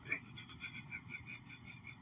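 A person's wheezing, squeaky laughter in rapid, even pulses, about five or six a second.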